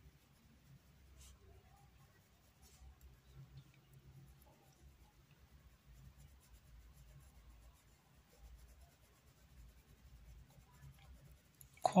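Faint, soft scratching of a paintbrush being stroked over fabric as paint is blended in, with a low hum underneath.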